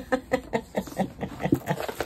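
A woman laughing softly in short, quick bursts, about five a second.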